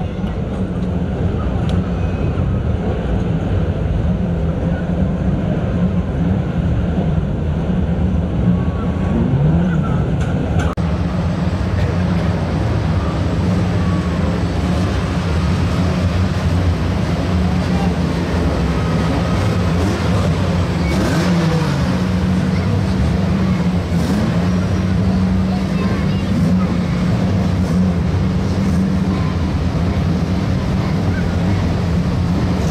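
Several saloon stock car engines running together as the cars lap in a line, with now and then a brief rev that rises and falls.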